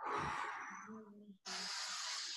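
A person breathing deeply: a long, sighing breath through the mouth, then after a brief pause another long breath beginning about one and a half seconds in.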